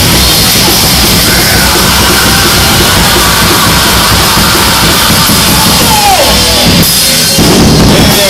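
Loud live heavy rock band playing, with the drum kit driving it.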